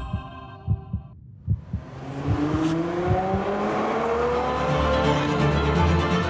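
A few deep thumps like a heartbeat, then a car engine accelerating, its pitch rising steadily for several seconds before levelling off.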